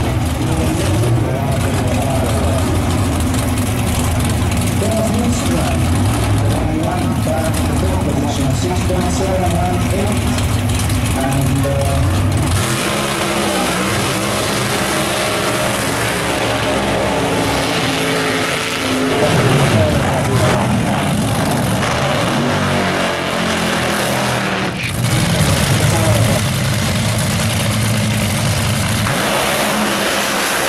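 Drag racing car engines running loud at the start line. About 12 s in the sound turns to a dense hiss of a smoky burnout, tyres spinning on the track, with engine revs coming back in the second half.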